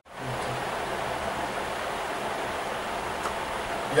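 Steady, even hiss of background room noise with no speech, starting after a brief silent gap.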